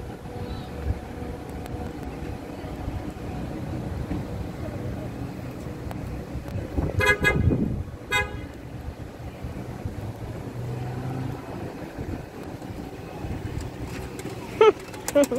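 A car horn toots twice: a short honk about seven seconds in and a briefer one about a second later, over a steady low rumble of vehicles.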